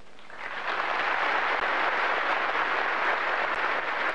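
Audience applauding: a steady wash of clapping that swells in about half a second in and holds, easing off near the end.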